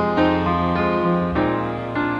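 Instrumental passage of a slow, tender ballad: piano chords changing every half second or so, over held, sustained tones.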